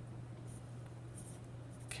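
Pen writing on paper: a few faint short scratches as digits are written, over a low steady hum.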